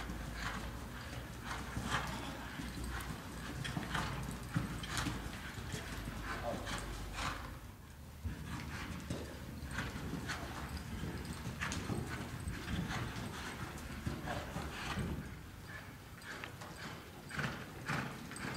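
Hoofbeats of a Quarter Horse mare on the soft dirt footing of an indoor arena as she turns and spins under saddle, then lopes off. The strikes come irregularly, with a short lull about eight seconds in.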